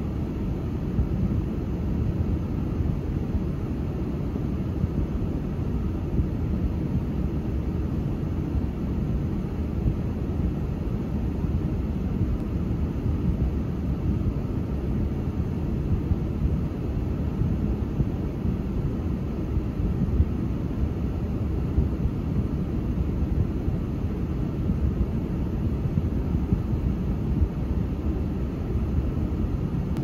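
Steady low rumble of an idling car engine heard from inside the stationary car's cabin.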